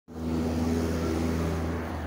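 A motor vehicle engine running steadily, a low hum at one unchanging pitch.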